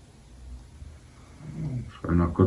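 Quiet low hum of the room and microphone; near the end a man's voice starts up.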